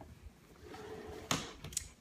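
Faint handling of an aluminium rolling makeup case with its front door folded open: a sharp click just past the middle and a fainter click soon after.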